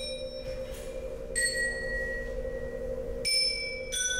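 Metal discs of a hanging mobile sculpture, cast from bomb metal and stainless steel, struck with a mallet and ringing like bells. A low tone rings steadily throughout, and two fresh strikes at higher pitches sound about a second and a half in and near the end, each ringing on.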